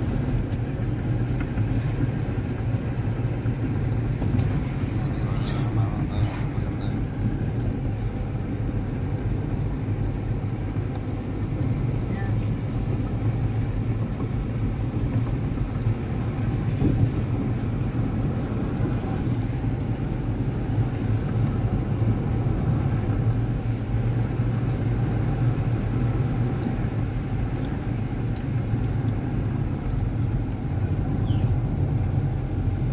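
Steady engine and road noise heard from inside a moving vehicle, a constant low hum with a couple of brief clicks about five to six seconds in.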